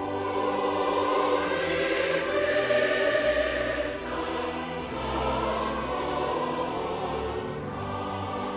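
Music with a choir singing long held notes over an orchestral string accompaniment, swelling in the first half and easing after the middle.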